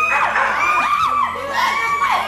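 Several people shrieking and yelling in fright at a small dog running loose at their feet, with long, high cries that rise and fall and overlap one another.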